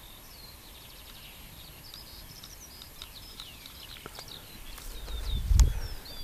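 Small birds chirping and whistling in quick short phrases, several calls overlapping. About five and a half seconds in, a single low thump rises above them.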